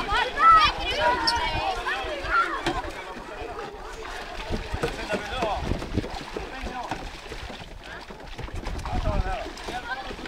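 Children's voices shouting and calling out over one another, loudest in the first few seconds, with water splashing around people wading in the shallows.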